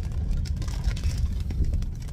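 Heavy rain pattering on a car's roof and windshield, heard from inside the cabin as many irregular ticks over the low rumble of the car rolling slowly.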